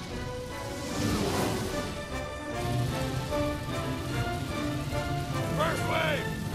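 Film score music with many held notes over a steady rushing noise, and a short voice cry near the end.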